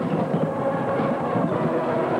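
High school marching band playing, with brass holding notes over a steady, rhythmic drum beat.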